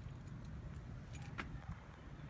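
Faint metallic jingling, a few short clinks, from the leash clip and harness hardware on a dog as it moves, over a steady low rumble.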